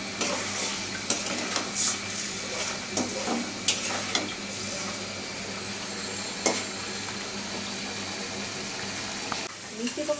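A metal spatula stirring and scraping pumpkin pieces in an aluminium kadai, with scattered clicks against the pan over the first six or seven seconds. Under it, a steady sizzle from the curry cooking.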